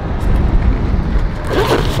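A steady low rumble, with a brief rustling scrape about one and a half seconds in.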